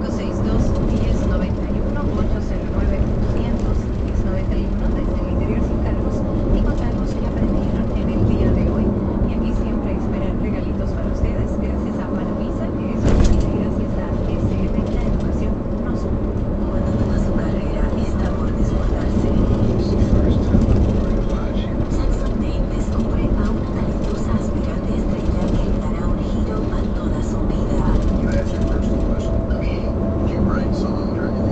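Steady road and engine rumble heard inside a moving car's cabin, with indistinct voices from the car radio beneath it. A single sharp knock comes about halfway through.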